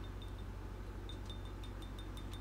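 Faint, quick light clinks of a small plastic measuring scoop tapping against a bowl as mica powder is shaken out, over a steady low hum.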